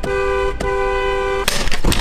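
Car horn sounding as the steering-wheel hub is pressed, two steady notes together: held about half a second, a brief break, then held again for nearly a second. It cuts off about a second and a half in, and a short burst of noise follows.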